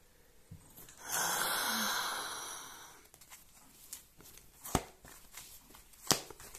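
A person's long breathy sigh, about two seconds, fading out, then a single light tap a little before the end.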